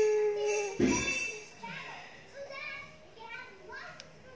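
A steady held tone lasting about a second, then faint child speech for the rest.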